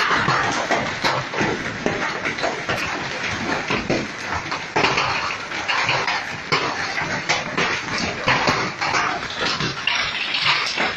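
Large hailstones falling hard: a dense, continuous clatter of many small impacts over a steady rushing noise.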